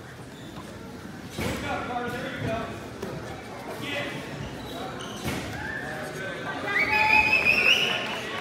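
Raised voices shouting across a reverberant gym during a youth wrestling bout, with a couple of dull thuds. The loudest is a higher-pitched shout near the end.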